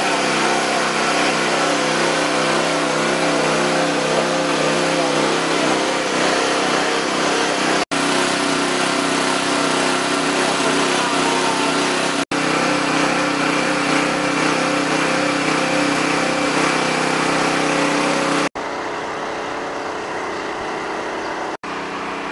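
An engine running steadily at constant speed, with a steady hum of several tones. It drops out briefly twice and turns quieter near the end.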